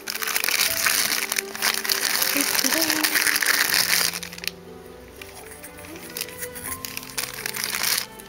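Thin plastic packaging bags crinkling and rustling while being handled, for about the first four seconds, then stopping. Soft background music plays underneath throughout.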